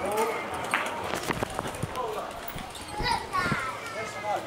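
People's voices talking in a pedestrian street, mixed with several sharp knocks in the first half, the kind of sound that footsteps or small impacts on hard pavement make.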